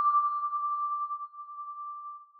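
The last note of a short chime-like logo jingle ringing on as a single steady tone and slowly dying away.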